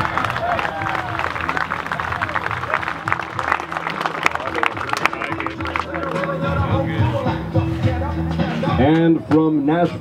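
Background music with a steady bass line, with light spectator clapping through the first half.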